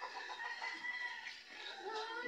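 Domestic chickens calling: one long drawn-out call in the first second, and another starting near the end.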